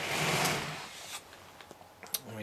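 A large LEGO model being turned on the table, a scraping slide lasting about a second that then fades, followed by a few faint clicks.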